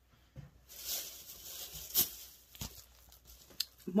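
Rustling and crinkling of plastic shopping bags and packaging as purchases are rummaged through and lifted out, with a couple of light knocks about halfway through.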